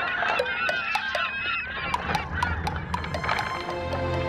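Frantic squawking and honking of poultry, many short rising and falling cries in quick succession, mixed with scattered sharp clicks. Music with steady held notes comes in near the end.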